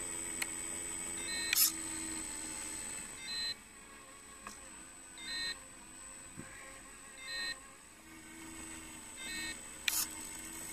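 Short electronic beeps from the radio-controlled truck's electronics, repeating about every two seconds over a steady high whine. A low electric hum runs for the first three seconds or so and returns near the end, with a sharp click about a second and a half in and another at the end.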